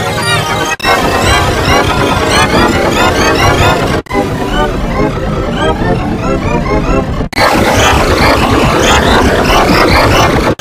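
Loud music with voices, heavily distorted by voice-changer effects. It breaks off sharply three times, about a second in, at about four seconds and at about seven seconds, and each section after a break sounds different.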